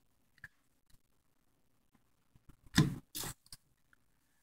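Two short hisses of a Liquid Wrench aerosol spray about three seconds in, lubricating the dry rear bearing of a 1980s Wards Signature box fan motor, with a few faint clicks of handling before them.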